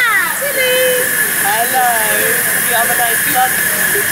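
Steady hiss of steam from the miniature live-steam locomotive LNER 458 standing still, with people's voices over it.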